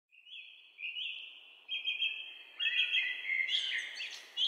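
Songbird calls: a run of high whistled chirps in short phrases, one after another, getting louder and busier toward the end.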